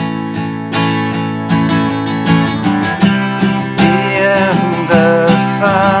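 Steel-string acoustic guitar strummed through an unusual chord change for a song's bridge. In the second half a voice hums a wavering tune over the chords.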